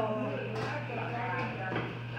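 Speech: voices talking, over a steady low hum.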